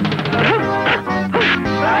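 Film background music with held tones, broken three times by short swooping sound effects with a hiss, about half a second, a second and a half, and two seconds in.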